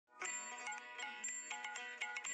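Faint chiming intro jingle: a quick run of bright, bell-like notes in a tinkling melody, like a ringtone.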